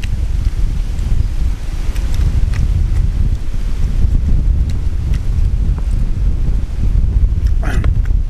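Wind buffeting the microphone, a steady low rumble throughout.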